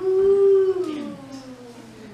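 A long dog-like howl from a human voice. It holds on one note, then slides slowly down in pitch and fades.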